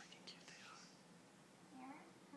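Near silence with faint whispering, and a brief faint voice starting near the end.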